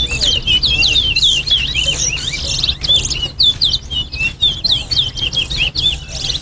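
Towa towa (chestnut-bellied seed finch) singing in a song-racing contest: a fast, unbroken run of short, sweet, hooked whistled notes, one of the song bouts the judge counts toward the race.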